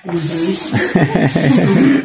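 A person's voice talking indistinctly.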